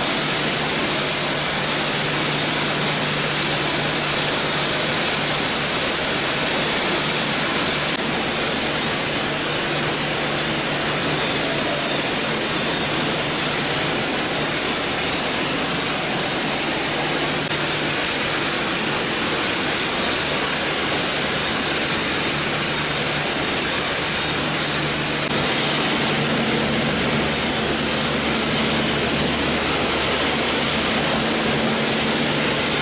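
Steady industrial machinery noise of a potato-processing line: conveyors and processing machines running, with a low hum whose pitch shifts slightly a few times.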